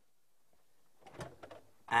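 A few faint clicks and knocks as a refrigerator door is pulled open, after a second of near silence.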